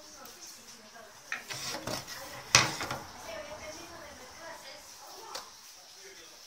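Hand tools and fine silver wire being handled on a wooden workbench: a few light clicks and knocks, the sharpest about two and a half seconds in.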